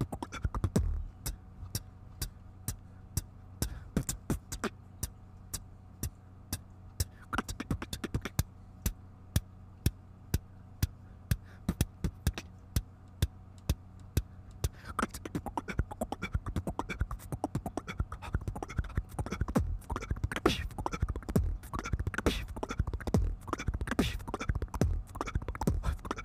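Solo beatboxing into a handheld microphone: sharp mouth-made clicks and snares at about two a second, then a denser, busier pattern with more bass from about fifteen seconds in, a change in tempo.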